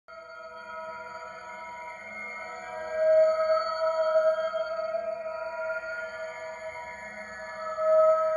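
Ambient electronic intro music of held, ringing tones that swells louder about three seconds in and again at the end.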